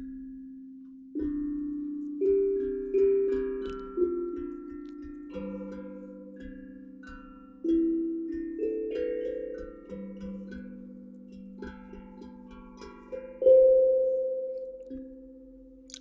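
A tuned percussion instrument struck one note at a time, each note ringing and slowly fading into the next, forming a slow, wandering melody of about a dozen notes. The first note comes about a second in, and the strongest strike comes near the end.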